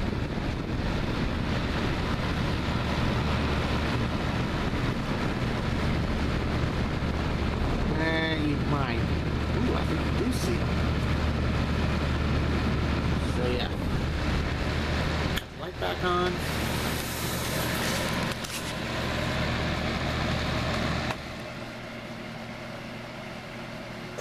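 Patton HF-50 electric fan heater running on its high heat setting: a steady rush of air from its fan with a low motor hum. The sound drops noticeably in level about three-quarters of the way through.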